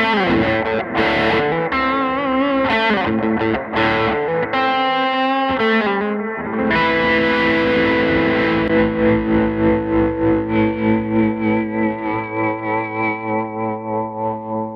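Guild Surfliner Deluxe solidbody electric guitar played through a 1964 Fender Vibroverb amp: a lead line of quick picked notes with bends, then, from about seven seconds in, a held chord that rings on and pulses in volume about twice a second.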